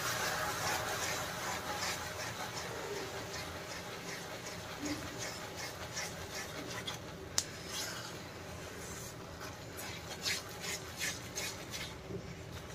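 Silicone spatula stirring hot sugar syrup into ghee-roasted gram flour in a non-stick kadhai. The frothing mixture sizzles softly, fading as it thickens, and there are short scrapes of the spatula in the pan in the second half.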